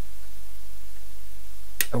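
A steady low hum, with one sharp click near the end.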